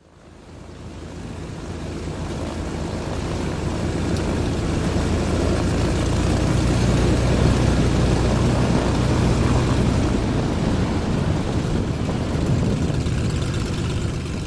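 Piper Aerostar's twin piston engines and propellers running as the plane taxis past. The engine drone grows louder over the first several seconds, then holds steady and eases off slightly near the end.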